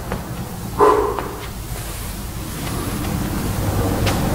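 A man's short voiced exhale about a second in, from the effort of a lunge-and-kick exercise. It sits over a steady low room rumble.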